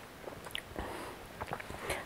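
Faint mouth sounds of someone tasting sparkling wine: a few soft lip smacks and clicks scattered over the two seconds.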